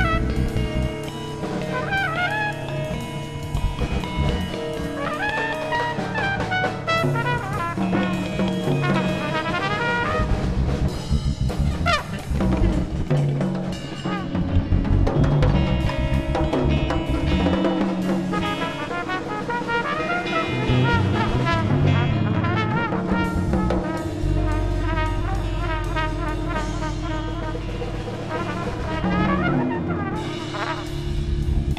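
Live electric jazz improvisation: a trumpet plays wavering, bending lines over electric guitar, electric bass and a drum kit with timbales. A low bass note is held for a few seconds near the end.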